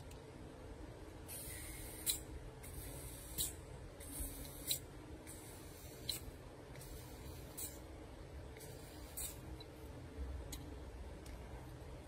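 Butane refill can pressed onto an inverted torch lighter's fill valve in short pulses: a faint hiss of gas entering for about a second each time, ending in a small click as the can is let up. It repeats about seven times, roughly every second and a half.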